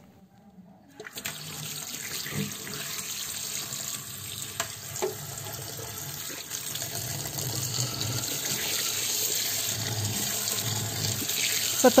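Tap water running into a stainless mesh strainer full of dried anchovies in a sink as they are rinsed, starting about a second in and then running steadily.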